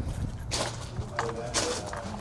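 Footsteps on gravel, a few irregular steps, with faint voices in the background.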